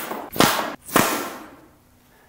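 Cold Steel blowgun fired with a hard, quick breath: short sharp puffs and pops as darts are driven out of the tube, the loudest about half a second and a second in, each dying away quickly.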